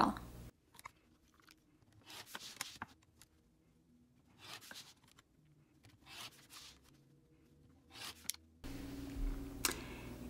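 Rotary cutter slicing through two layers of stitched cotton fabric along a quilting ruler on a cutting mat, in about five short strokes with near silence between.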